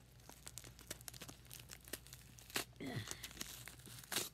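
Aluminium foil wrapper being unwrapped by hand from a burger: a run of irregular crinkling and tearing crackles.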